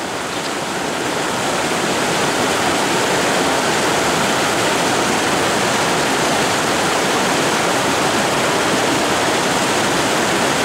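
River rapids rushing over boulders: a steady, even rush of water that grows a little louder over the first couple of seconds and then holds.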